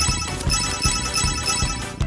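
A bright chime sound effect, a rapid run of high bell-like notes starting about half a second in, over background music with a steady beat.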